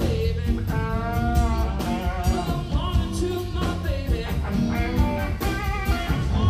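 Live blues-rock band playing: a man singing over two electric guitars, bass guitar and a drum kit keeping a steady beat.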